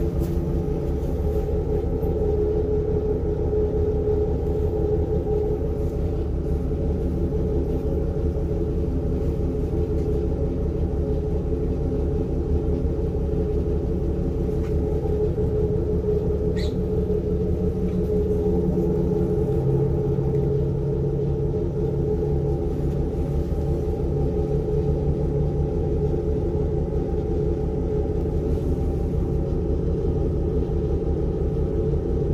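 A standing diesel railcar, its engine idling, heard from inside the carriage: a steady low rumble with a constant hum. There is one brief high squeak about halfway through, and soon after the low hum shifts in pitch.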